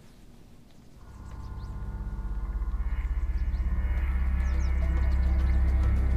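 Background score fading in about a second in: a low sustained drone under several layered held tones, swelling steadily louder.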